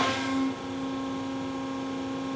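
Electric motor of a hydraulic rod-pumping unit's gravity-motor hydraulic pump switching on with a sudden surge, then running with a steady hum.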